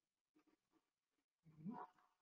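Near silence: a pause between speakers, with one brief faint sound with a rising pitch near the end.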